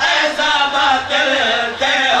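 A group of men chanting a nauha, a Shia mourning lament, together through microphones, the voices amplified and loud.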